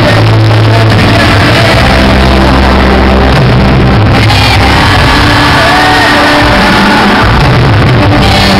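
Live band music in a large hall: piano, drums and bass with a lead voice singing, and the crowd shouting along.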